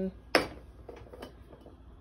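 A single sharp clack of kitchenware at the stove, then a few faint light ticks.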